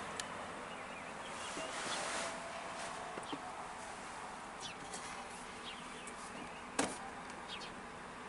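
Quiet cab room tone, a faint steady hiss, with a few faint high chirps. One sharp click comes about seven seconds in.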